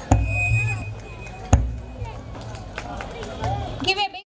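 Scattered voices chattering after the dance music has stopped, over a low rumble, with one sharp knock about a second and a half in.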